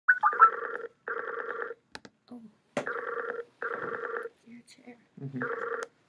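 Video-call app's outgoing ringing tone: a short chime, then ringing bursts in pairs, the pairs repeating about every two and a half seconds while the call rings out. A few faint clicks fall between the rings.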